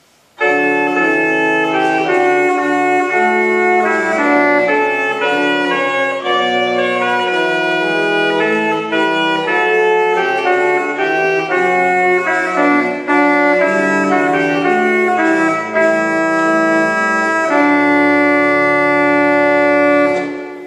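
Joaquín Lois pipe organ (built 2009) playing a lively Allegro. It starts suddenly about half a second in with quick running notes over a moving bass, and ends on a long held chord over the last couple of seconds.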